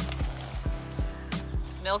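Background music with a steady beat and a held bass line.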